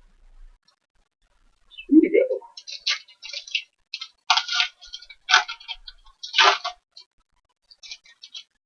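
A foil trading-card pack wrapper crinkling in a run of short rustling bursts as it is torn open and handled, starting about two seconds in.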